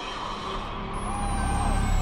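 Lamborghini Veneno's V12 engine as the car rolls slowly toward the camera, a low rumble that grows steadily louder.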